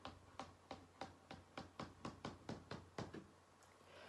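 Index and middle fingertips tapping on a tabletop as they 'walk' across it: about fourteen faint, light taps that quicken slightly and stop about three seconds in.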